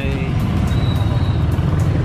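A motor vehicle engine running steadily, a low rumble, with a faint thin high tone about halfway through.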